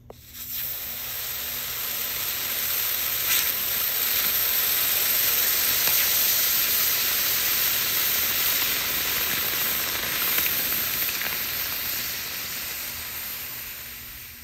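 A hot cast copper cube set down on a block of ice, sizzling as the ice flashes to steam. The hiss starts suddenly, builds over the first few seconds and fades near the end.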